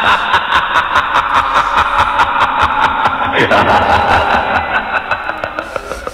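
Continuous snickering laughter with music underneath, louder than the talk around it, cutting off suddenly near the end.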